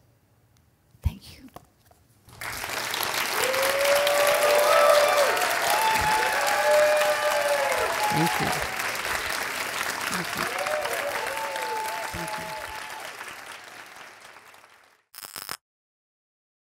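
Audience applause with whooping cheers, starting about two and a half seconds in and dying away near the end; a single knock sounds a second before it begins.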